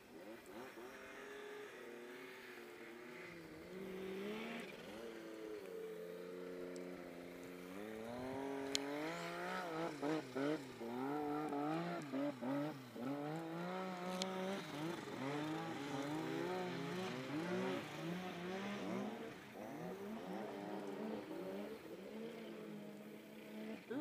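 Snowmobile engine revving under throttle, its pitch stepping up and down as the rider works it on a steep snow slope. It gets louder and more changeable from about a third of the way in, with a couple of sharp clicks.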